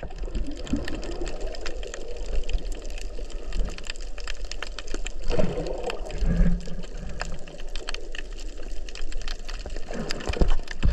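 Underwater ambience picked up by a submerged camera: water movement with many scattered crackling clicks, and low gurgling swells about five and six seconds in.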